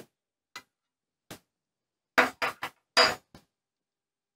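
Small metal parts of an industrial bartack machine's oscillating shuttle assembly clicking and clinking as the race and hook are lifted out by hand. Two faint ticks come first, then a quick run of sharper metallic knocks about two to three and a half seconds in.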